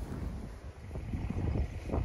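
Wind buffeting the microphone outdoors: an uneven low rumble with a faint hiss above it.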